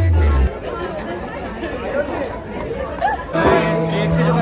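Loud dance music with a heavy bass cuts off about half a second in, giving way to the chatter of many people talking at once. Near the end, music with steady held notes comes in.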